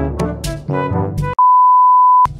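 Comic brass-led background music that cuts off about two-thirds of the way in. It is replaced by a single loud, steady, high beep: a television test-pattern tone used as a glitch transition effect.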